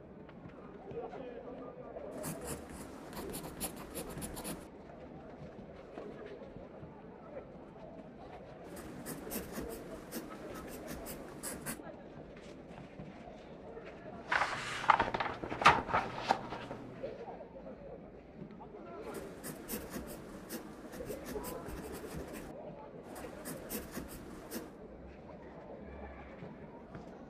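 Pencil writing on paper in four spells of quick, fine scratching, with one louder rustle of paper about halfway through. Underneath runs a low murmur of distant voices.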